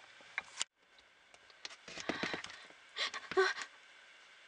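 Handling noise: light clicks and rustling as dolls and props are moved about, with two short breathy bursts near the end.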